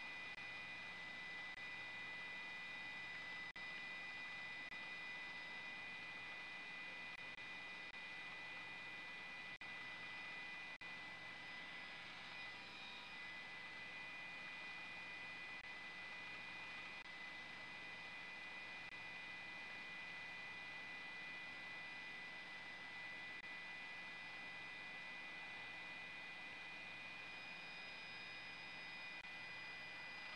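Faint, steady turbine whine and hiss from a news helicopter, with several high whining tones that hold level throughout.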